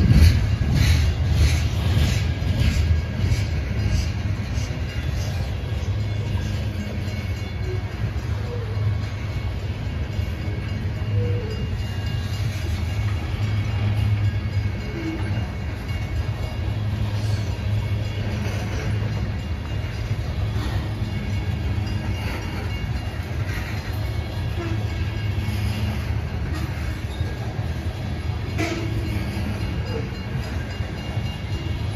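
Freight train of covered hopper cars rolling past at close range: a steady low rumble of steel wheels on rail, with wheel clicks over the rail joints in the first few seconds that fade away, and a few faint short squeaks later on.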